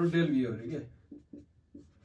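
Whiteboard marker writing on the board in a few short strokes, after a man's speech trails off.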